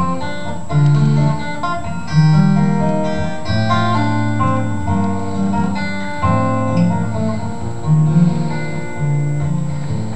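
Solo acoustic guitar playing an instrumental introduction: a picked melody over low bass notes, just before the song's first sung verse.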